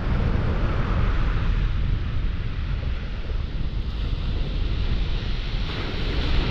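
Steady wind rumble on the microphone, with surf washing on a shingle beach behind it.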